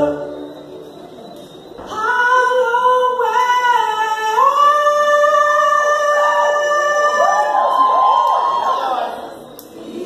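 A choir singing unaccompanied: after a quieter start, a chord of long held notes comes in about two seconds in, steps up in pitch about halfway, then breaks into swooping vocal runs before fading near the end.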